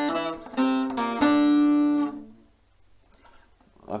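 Long-neck bağlama (uzun sap saz) picked with a plectrum, playing a short phrase of a few quick notes; the last note is held ringing for about a second and then dies away.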